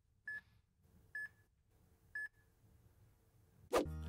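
LumaFusion voiceover recorder's countdown: three short electronic beeps about a second apart, counting down to the start of recording. Just before the end, a click as other audio starts.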